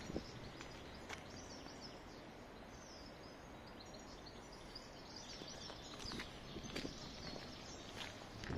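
Faint outdoor city ambience: a steady background hum with small birds chirping, busier in the second half, and a few footsteps.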